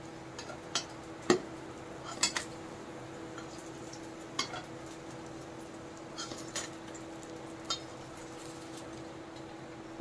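Metal spatula knocking and clinking against a metal kadhai while fried pakoras are lifted out: about eight scattered clinks, the sharpest about a second in. A low steady hum runs underneath.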